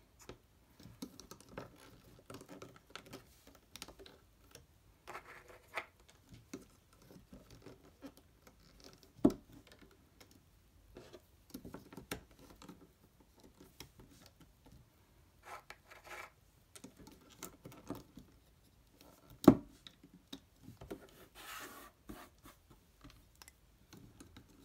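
Light scratching and small clicks of a plastic loom hook and rubber bands being worked over the pegs of a Rainbow Loom, with two sharper clicks about nine seconds in and again near twenty seconds in.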